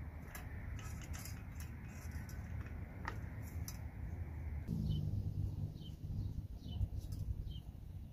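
Replacement gear head of a Troy-Bilt TB80EC string trimmer being turned and pushed onto the drive shaft: a run of light clicks and scrapes in the first few seconds. In the second half small birds chirp several times over a low hum.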